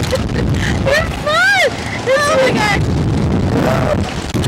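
Wind buffeting the onboard camera microphone as a Slingshot reverse-bungee ride capsule swings and flips, with the riders shrieking over it; the loudest cry, about a second and a half in, rises and falls in pitch.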